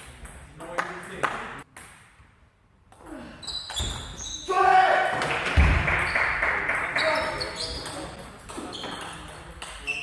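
Table tennis ball clicking off rackets and the table in a rally, with a series of sharp ticks in the first half. About halfway through, the ball sounds give way to a loud shout and voices that fade over the next few seconds.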